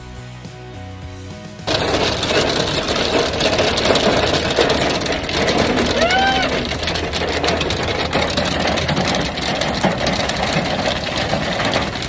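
Background music, then about a second and a half in, hail suddenly drumming on a car's roof and windows, heard from inside the car as a dense, loud rattle of many small hits. About halfway through a woman gives a short exclamation over it.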